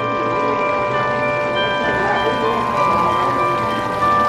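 Clock-tower chimes ringing: several bell notes sound together and ring on, with new notes struck partway through.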